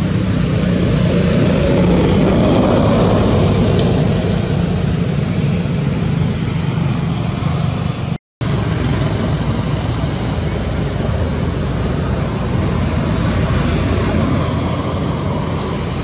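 Steady, loud outdoor background noise, an even hiss over a low rumble, broken by a brief dead silence about eight seconds in where the footage is cut.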